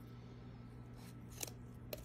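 A knife cutting meat from a rabbit carcass along the backbone, with three short sharp scrapes or clicks of the blade in the second half, over a steady low hum.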